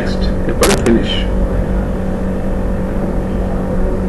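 A steady low hum over background noise, with a brief voice-like sound a little over half a second in.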